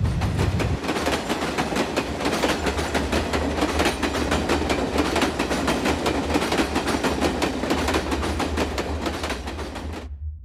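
A loud, dense clattering noise made of many rapid knocks, like a train running on rails.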